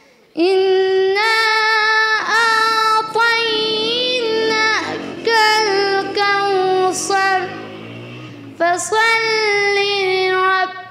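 A young girl's solo voice chanting melodically in the style of Quran recitation (qira'at): long held notes with ornamented turns, broken by short breaths. It begins about half a second in, after a brief silence.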